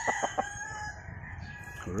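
A rooster crowing, one long held call, with a few short clucks near the start.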